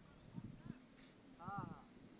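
Faint voices, with one short spoken or called syllable about one and a half seconds in and a few soft low knocks, over a steady faint high-pitched hum.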